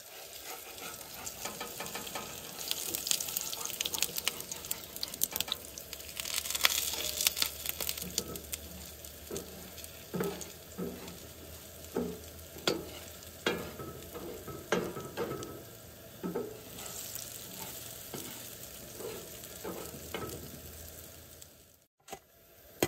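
Pancake batter and bacon sizzling in cast-iron skillets on a Coleman camp stove. A metal spatula scrapes under the pancake, at first continuously and then from about a third of the way in as a run of separate taps and knocks against the pan.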